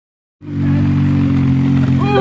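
A vehicle engine idling steadily, a loud, even low-pitched note that holds without any revving.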